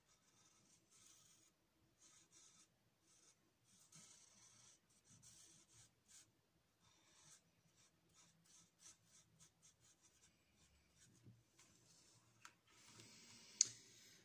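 Black Staedtler permanent marker rubbing on sketchbook paper in many short, faint strokes as the meeting points of the lines are rounded off. One sharp click near the end.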